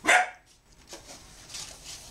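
A dog barks once, short and loud, right at the start, followed by faint rustles from ribbon being handled.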